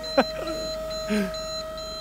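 A steady, even whine under a rapid, high-pitched electronic beeping of about four beeps a second, with a short laugh over it.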